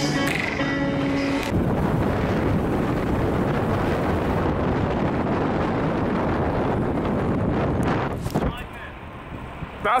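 Background music that cuts off about a second and a half in, giving way to a steady rush of wind buffeting the microphone of a camera riding on a moving bicycle. The rush drops away shortly before the end.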